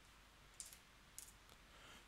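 Near silence: room tone with two faint clicks from the computer's keyboard and mouse in use, about half a second and about a second in.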